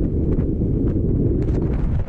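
Wind rushing over the microphone of a camera riding on a moving scooter: a dense, steady low rumble.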